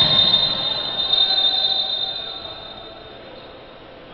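A referee's whistle blown in one long blast, a high shrill tone of two close pitches, over the noise of a large indoor gym; it weakens after about two seconds and dies out near the end, and play stops.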